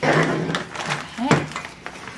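Softbox fabric rustling as it is handled, with a short voiced sound from a person about a second and a quarter in.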